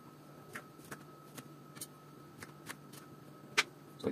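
Kitchen knife slicing strawberries on a plastic cutting board: light, irregular clicks as the blade comes down on the board, about eight in four seconds, the loudest near the end.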